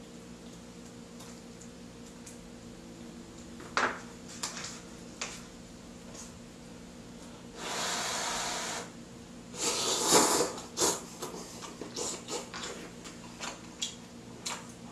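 A person slurping ramen noodles: one long slurp about eight seconds in, then shorter slurps around ten seconds, with small clicks between. A faint steady hum lies beneath throughout.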